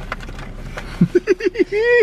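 A person laughing in a quick run of short bursts about a second in, ending on a held high vocal note that cuts off abruptly. Before it, soft rustling and handling noise.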